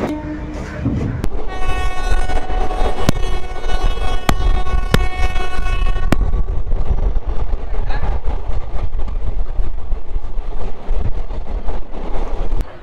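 Train horn held for about five seconds, starting about a second in, over the steady low rumble of the moving train, with a few sharp clicks.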